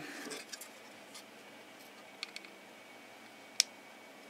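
Faint handling noise of a plastic micro USB power plug and a circuit board in the hands: a few small ticks, then one sharper click about three and a half seconds in, over quiet room tone.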